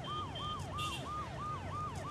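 Police siren in a fast yelp: each wail rises, holds briefly and falls, about three a second, over a low steady traffic rumble.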